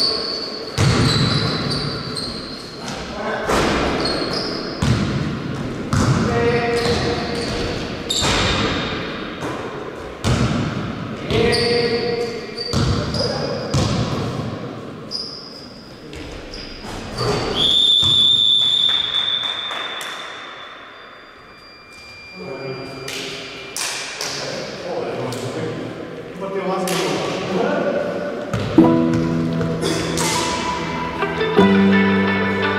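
Basketball bouncing and thudding on a gym court floor during play, with short shoe squeaks and players' voices echoing in the hall. Music comes in near the end.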